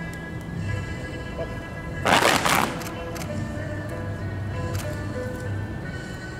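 Music with sustained tones, cut across about two seconds in by a loud, ragged snap lasting under a second as a group of kung fu fans is flicked open together.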